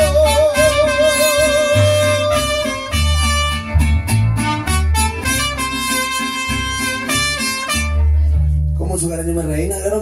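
Mariachi band ending a song: the singer holds a long final note with vibrato for about two and a half seconds, then the band plays the closing bars over deep bass notes, stopping about nine seconds in.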